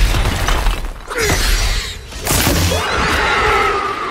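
Film battle sound effects: several falling-pitched screeches, typical of the Ringwraiths' (Nazgûl) shrieks, over heavy low rumbling and crashing debris.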